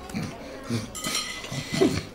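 Knives and forks clinking and scraping on china dinner plates, with a person clearing their throat about halfway through.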